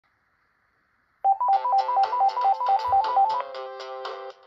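Panasonic cordless telephone ringing with an electronic ringtone for an incoming call: after about a second of silence, a rapid warble that alternates between two notes several times a second, then a held lower tone near the end.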